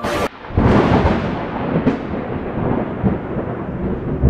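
Thunder: a sharp crack at the start, then a long rolling rumble that builds and slowly fades, with another brief crack about two seconds in.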